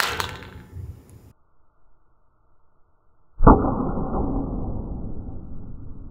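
A Motorola DynaTAC 8000X brick phone landing on a concrete deck after a drop from a height: the clatter of the hit dies away in the first second. After a silent gap, the impact returns about three and a half seconds in, slowed down into a deep, muffled thud that fades slowly.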